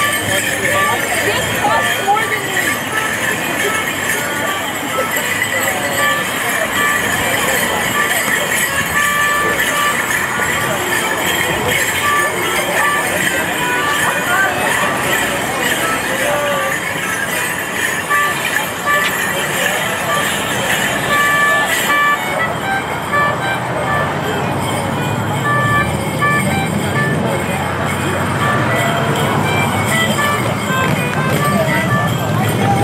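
A Morris dance tune played on a melody instrument, over crowd chatter and the jingling of dancers' leg bells. The high jingle falls away about two-thirds of the way through while the tune and chatter go on.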